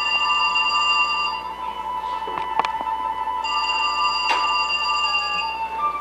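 Keyboard music: long, sustained high notes held steady, stepping down in pitch near the end, with a few sharp clicks.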